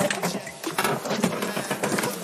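Clicks and rustling as the car's driver's door is unlatched and opened and a person shifts out of the seat.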